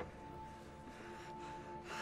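Soft, short gasping breaths from a bound man, building toward the end, over a quiet held note of film score.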